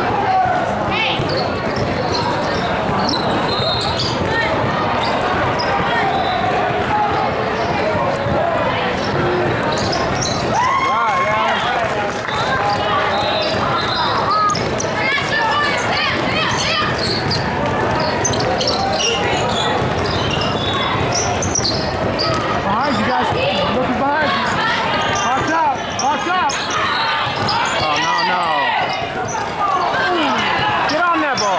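Basketball bouncing and dribbling on a modular tile court, with players and spectators calling out and talking, echoing in a large hall.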